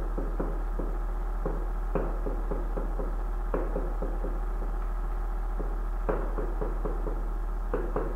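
Pen tapping and knocking on an interactive touchscreen board as small digits and fractions are written: irregular light taps, a few a second, over a steady low electrical hum.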